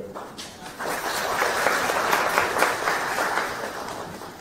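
Audience applauding in a hall, starting about a second in and easing off near the end.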